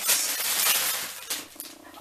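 Clear plastic packaging bag crinkling and rustling as it is handled and lifted, loud at first and dying down after about a second.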